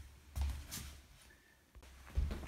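Handling noise as a camera is picked up and moved to a new position: a couple of soft, low thumps and a few light clicks.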